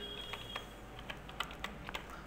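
Faint keystrokes on a computer keyboard: several separate key presses, spaced unevenly, as a short domain name is typed into a field.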